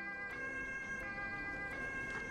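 Two-tone ambulance siren, fairly quiet, stepping between a high and a low note about every 0.7 seconds, with soft background music under it.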